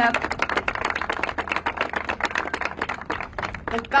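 Small crowd applauding, a dense patter of individual hand claps that dies down as speech resumes near the end.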